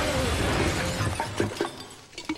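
A shop's plate-glass window shattering as it is smashed in, the shards showering down and trailing off over about a second and a half.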